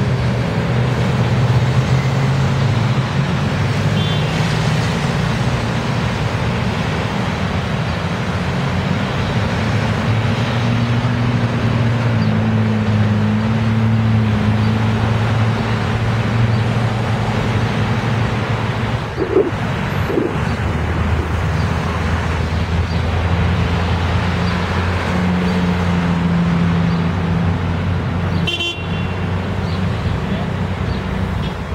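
Steady city street traffic: a continuous low drone of vehicle engines whose pitch shifts slowly as traffic idles and moves, with a few brief higher sounds in between.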